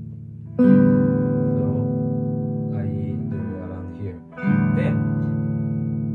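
Clean electric archtop guitar chords played through a small Yamaha THR10II amp, heard as the amp's bass control is being set. One chord is struck about half a second in and left to ring down, and a second chord is struck a little after four seconds and rings on.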